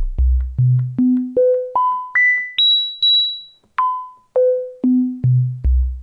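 The Novation Circuit Mono Station's analogue filter is self-oscillating at full resonance with the oscillators turned off, giving a nearly pure sine-like tone. It is played as a run of short plucked notes climbing an octave at a time from a deep bass to a high whistle, then stepping back down. The filter tracks the keyboard over about six octaves.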